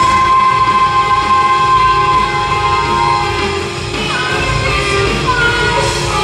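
Live worship band playing, with drums, keyboard and electric guitars under singing voices; a long held note carries through the first three seconds or so before the melody moves on.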